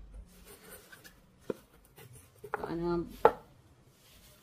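Handling noise from a canvas pencil roll and cardboard gift box: soft rustling with two sharp taps, one about halfway through and a louder one near the end. Just before the louder tap, a woman gives a short hummed "mm".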